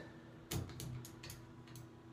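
Elevator control-panel buttons being pressed: one sharp click about half a second in, then several faint ticks, over a faint steady hum. The door does not open.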